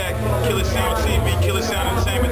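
Men talking close to the microphone over loud background music with a heavy, pulsing bass beat.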